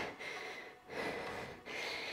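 A woman breathing hard from exertion while working with dumbbells: three forceful breaths in quick succession.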